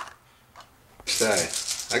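Near quiet for about a second, then a rattle of dice being shaken in the hand, with a man's voice starting at the same time.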